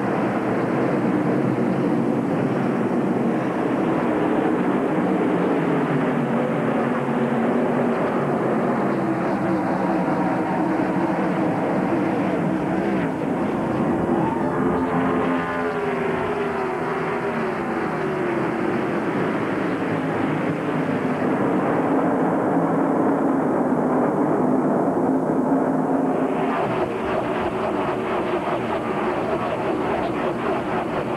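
A full field of NASCAR Winston Cup stock cars running their pushrod V8 engines at full throttle after the green flag, a dense wall of engine sound. About halfway through, the pitch swoops as cars pass close by.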